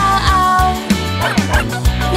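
Children's song instrumental with a steady beat, with cartoon dog barks, "au au au", in time with the music.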